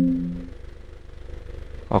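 A pitched chime, a few steady tones sounding together, fading out within the first half second. After it comes a faint low steady hum.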